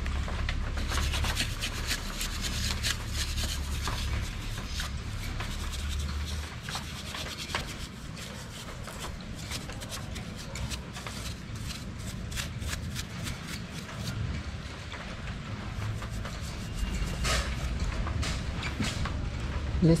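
Brush scrubbing a motorcycle's front brake caliper clean with gasoline: rapid scratchy bristle strokes, dense at first and thinning out after about fourteen seconds.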